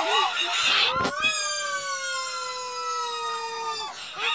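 A few short voice sounds, then a long drawn-out cry held for nearly three seconds, its pitch sinking slowly before it cuts off abruptly.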